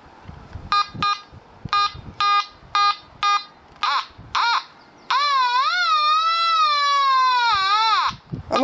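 Quest Pro metal detector's pinpoint audio: short pitched beeps about twice a second, two quick chirps, then from about five seconds in a long tone wavering up and down in pitch as the coil is swept over a target.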